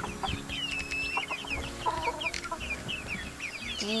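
A flock of young chickens (Splash Ameraucana and silkie pullets) cheeping with many short, high peeps. A lower cluck comes about two seconds in.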